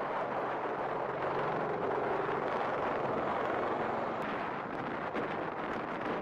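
V-22 Osprey tiltrotor in flight: a steady, loud rushing noise from its proprotors and engines, with a low hum beneath.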